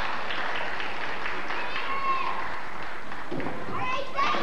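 Crowd in a large arena hall: many voices talking and calling out over one another, with some scattered clapping early on.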